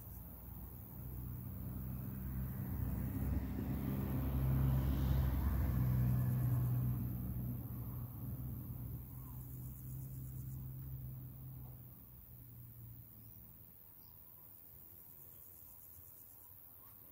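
A motor vehicle passing by: a low engine hum with some road hiss swells, is loudest about five seconds in, then fades away over the next several seconds.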